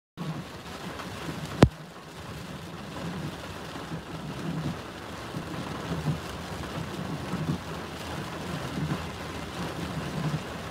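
Storm rain and wind beating on a pickup truck's windshield and body, heard from inside the cab as a steady wash with low buffeting. One sharp click comes a little under two seconds in.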